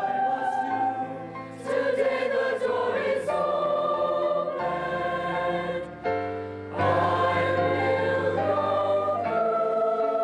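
Mixed choir singing held chords in phrases, each new phrase coming in louder after a brief dip, about two seconds in and again near seven seconds.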